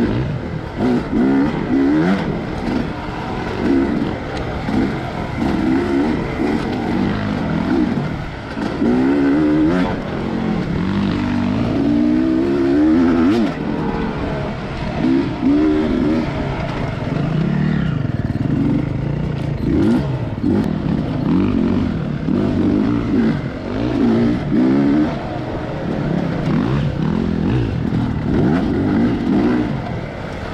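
Dirt bike engine, heard close from the bike itself, revving up and down again and again as the throttle is opened and closed through the trail's turns.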